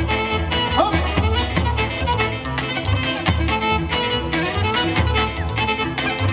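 Live Pontic Greek dance music from a band of clarinet, keyboards and daouli drum, a melody over a steady, even beat.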